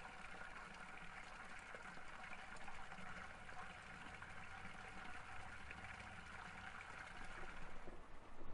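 Faint, steady trickle of running water.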